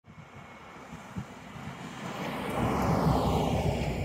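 A four-cylinder 1992 Toyota pickup driving past on a gravel road: its engine and tyre noise grow louder, peak about three quarters of the way in, and begin to fade as it passes.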